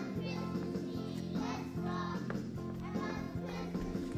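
Music playing with a group of young children singing along, their voices wavering over a steady accompaniment.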